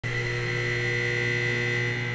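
Steady low hum with a thin, high, steady whine over it, from the centrifuge trainer's equipment while the gondola is still at rest.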